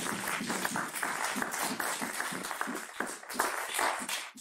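An audience applauding, many hands clapping together.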